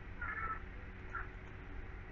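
Two faint, high-pitched animal calls in the background: a longer one just after the start and a short one about a second in, over a low steady hum.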